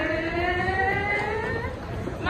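A woman's long, drawn-out vocal call, one held voice rising slowly in pitch for about a second and a half before it fades near the end. It is the drawn-out lead call of a group huddle chant with hands stacked.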